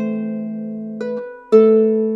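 Harp music: plucked notes and chords about every half second, each ringing and fading away, with a short gap before a louder note near the end.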